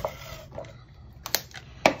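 A few short, sharp clicks and light knocks from crafting tools and paper being handled on a wooden tabletop, over quiet room tone.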